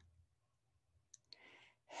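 Near silence: room tone with two faint mouth clicks about a second in, then a short in-breath just before speech resumes.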